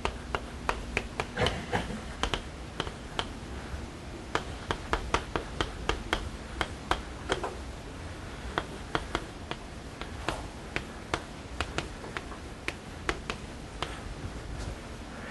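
Chalk writing on a blackboard: a long run of sharp, irregular taps and clicks, about two or three a second.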